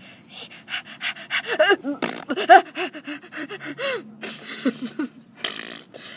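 A young person's voice making mock straining noises: grunts, gasps and breathy huffs in short bursts, with quick rising-and-falling vocal squeaks, voicing a figure straining on the toilet.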